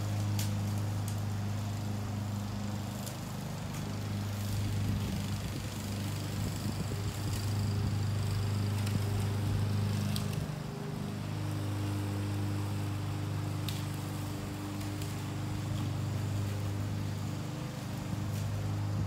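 Gas-engine Honda push mower running steadily under load as it cuts grass, a constant hum that briefly dips and shifts about ten seconds in as the mower is turned at the end of a pass.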